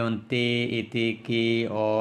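A man's voice reading out a list of short syllables in a drawn-out, sing-song chant, four held syllables at a fairly level pitch.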